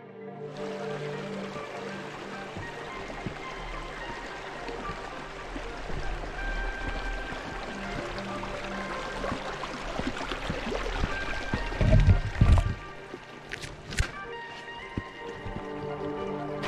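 Background music over the steady rushing of a small stream, which starts about half a second in. Near the end comes a loud low rumbling thump, followed by two sharp clicks.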